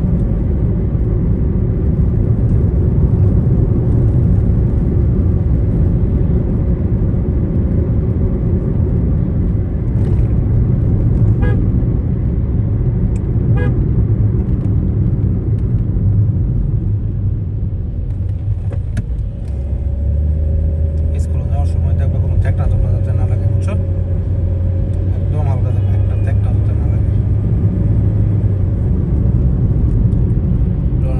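Steady low rumble of engine and tyre noise inside a moving car's cabin while driving along a road.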